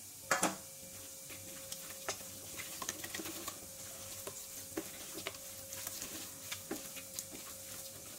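A bare hand mixing raw boneless chicken pieces with a paste in a stainless steel bowl: wet squelches and irregular small clicks of meat and fingers against the steel, with two louder slaps just after the start.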